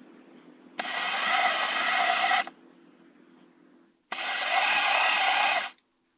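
Enabot EBO SE home robot's drive motors running, heard through the robot's own microphone: two whirring spells of about a second and a half each, one about a second in and one about four seconds in, each starting and stopping abruptly.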